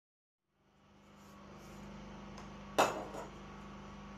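A low steady hum of room tone, with one sharp metallic clack a little under three seconds in, as the long steel ruler is taken off the fabric and laid on the table.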